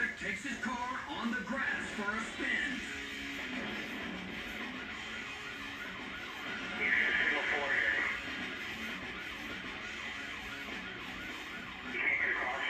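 Police siren wailing over a bed of background music, with a louder stretch about seven seconds in.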